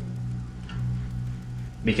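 A low open string of a seven-string electric guitar in B standard ringing on steadily at one pitch, a deep sustained note with no attack.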